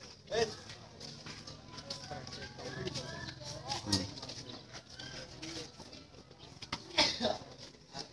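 Men's voices talking and calling out over a low steady hum, with a few sharp knocks: one about half a second in, one midway, and the loudest near the end.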